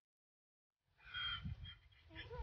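A short, high-pitched call over a low, uneven outdoor rumble, starting about a second in; the call is typical of an owner calling a donkey in.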